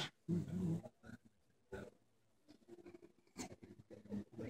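Quiet pause with no music playing: a few brief, scattered voice sounds and small stage and room noises, low in level.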